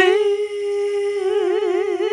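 A woman's voice humming one long held note, steady at first, then wavering up and down about four or five times a second in a vibrato from a little past halfway.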